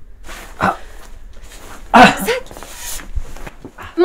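A person's short breathy vocal sounds, groans or gasps rather than words, the loudest about two seconds in.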